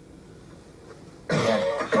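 Quiet room tone for over a second, then a man clears his throat with a sudden, harsh cough-like burst, running straight into the start of his speech near the end.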